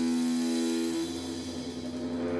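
Live rock band music: sustained electric guitar notes held through effects and distortion. The higher of two held notes stops about a second in, and the lower one keeps droning.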